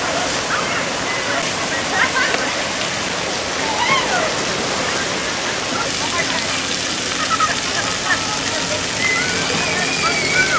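Steady rush of splashing water from water-park spray fountains and a slide splash-out, with children's voices and shouts over it.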